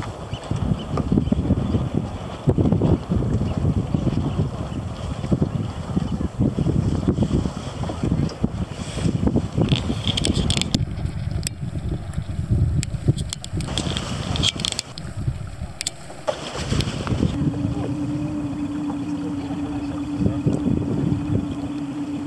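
Wind buffeting the microphone in gusts, easing off for a few seconds in the middle. About two-thirds of the way through, a steady engine hum sets in and runs on under the wind.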